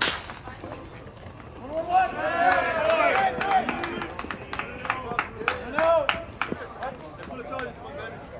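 A baseball bat cracks against the pitched ball once, right at the start. About two seconds later, several voices shout and cheer for a few seconds, with scattered sharp claps.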